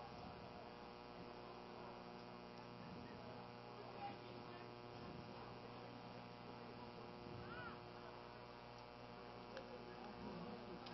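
Near silence with a steady electrical hum.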